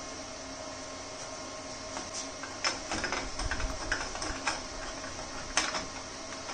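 Light metal clicks and knocks, starting about two seconds in, as a metal tube is set up in a vise-mounted tube notcher before fish-mouthing its end. A steady fan hum runs underneath.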